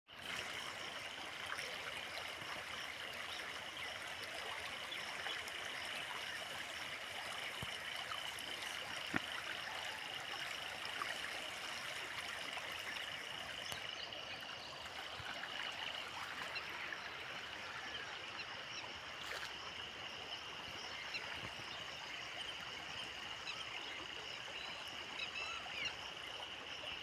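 Floodwater rushing steadily across a road washed out by heavy rain, with a constant high-pitched drone over the water.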